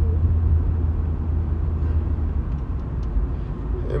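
A steady low rumble with no distinct events, heard through a pause between sentences.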